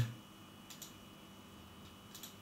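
Faint clicks of a computer mouse button, a pair about three quarters of a second in and another near the end, over quiet room tone.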